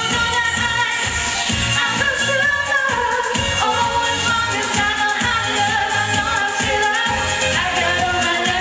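Pop song sung live into handheld microphones by a male and a female singer, over backing music with a steady beat.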